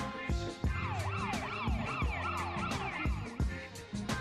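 A siren sounding a fast up-and-down wail for about two seconds, starting about a second in, over background music with a steady drum beat.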